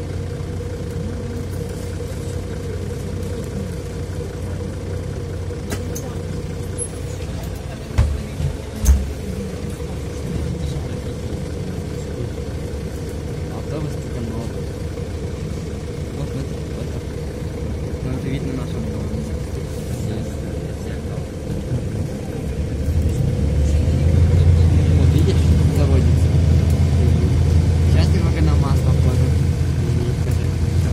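Mercedes-Benz O530 Citaro city bus heard from inside the cabin: the engine idles with a steady hum, with two short thumps about eight seconds in. In the last several seconds the engine note rises into a louder rumble with a rising whine as the bus pulls away and speeds up.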